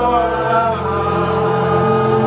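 A slow hymn sung with electronic keyboard accompaniment: long held notes over a steady bass.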